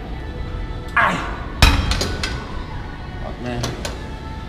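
Steel plates of a gym machine's weight stack clanking: one loud clank about one and a half seconds in, then a few lighter clinks. A strained grunt comes just before the clank, and music plays underneath.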